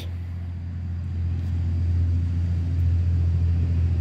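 A steady low rumble with a faint hum, growing a little louder after the first second.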